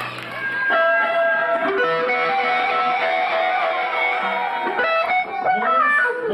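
Electric guitar playing long held notes through an amplifier, a few of them bending in pitch.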